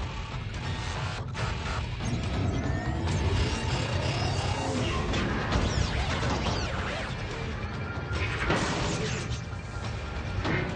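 Action-film sound mix: dense mechanical clanking and crashing effects over a heavy low rumble, with orchestral score underneath. There is a loud surge of noise about eight and a half seconds in.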